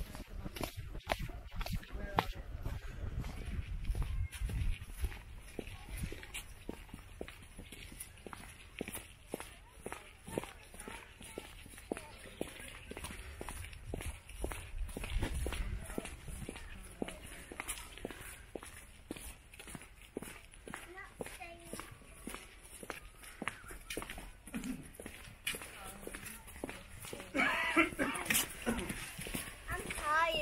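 Footsteps of a person walking steadily, about two steps a second, on a dirt path and then stone paving. Two spells of low wind rumble on the microphone, and voices near the end.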